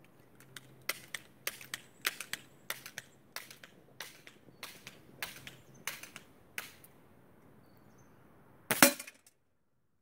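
A rapid string of gunshots, with bullets striking the target on a heavy steel bullet box, about two sharp cracks a second for some six seconds. Near the end there is one louder, longer burst, then the sound cuts out suddenly.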